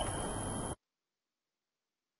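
Steady background hiss with a faint high-pitched whine, which cuts off suddenly under a second in and leaves complete silence.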